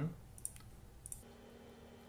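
A couple of computer mouse clicks, the sharpest about half a second in, then a fainter one a little after a second in.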